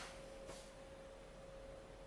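A faint, steady pure tone held at one pitch, with a faint click about half a second in.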